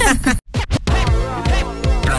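Hip-hop jingle: after a brief cut-out, a few quick turntable scratches, then a beat with steady notes and regular bass hits.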